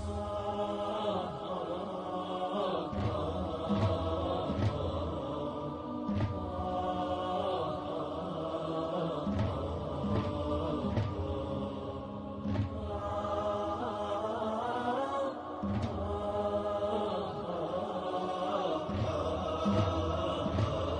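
Chanted devotional vocals over music, the voice holding long wavering notes, with recurring low drum beats.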